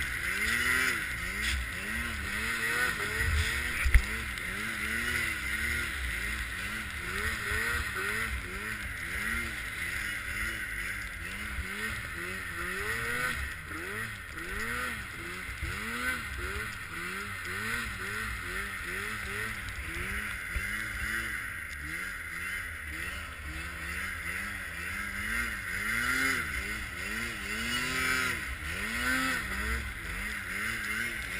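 Arctic Cat M8 snowmobile's two-stroke engine revving up and down over and over as it works through deep powder, the pitch rising and falling about once a second. A single sharp knock about four seconds in.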